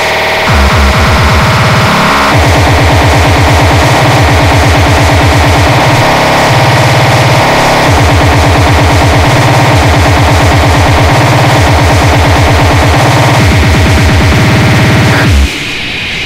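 Speedcore electronic music: a very rapid kick drum hammering out evenly spaced hits under a dense, noisy synth layer. The kicks drop out briefly near the end.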